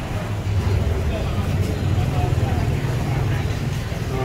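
Indistinct voices of a small gathering of people, over a steady low rumble that is louder than the talk.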